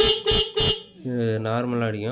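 Electric bike horn sounding through a 12V melody-maker controller: three short honks about a third of a second apart, then a longer wavering tone from about a second in, the pattern set by the melody maker's mode switch.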